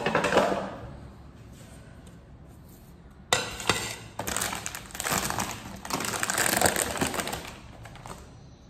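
Plastic rice-cake packet crinkling as it is handled. About three seconds in, a plate is set down with a knock on a stone countertop, followed by several seconds of loud crinkling as the packet is opened.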